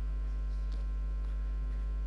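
Steady low electrical mains hum with no other sound over it.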